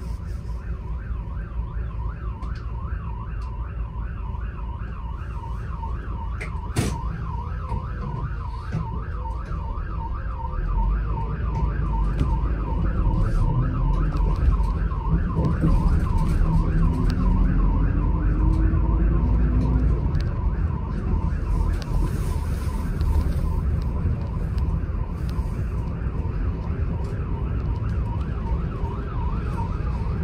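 An emergency-vehicle siren on a fast yelp, rising and falling about four times a second, fading near the end. Under it runs the bus's engine and road rumble, which grows louder for about ten seconds in the middle. One sharp click comes about seven seconds in.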